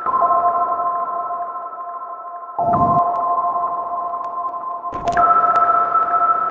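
Eerie electronic sci-fi drone: a few steady, pure, sonar-like tones held together like a chord. The tones shift to a new set about two and a half seconds in and again near five seconds, each change marked by a low swell.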